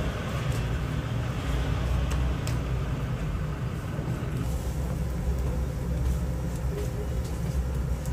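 Steady low rumble of street traffic and vehicle engines, with a few faint clicks.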